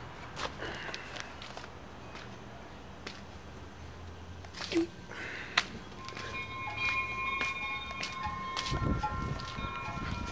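Handheld camera handling and footsteps on soil, with scattered clicks and knocks. From about six seconds in, several steady chime-like tones at different pitches enter one after another and ring on together.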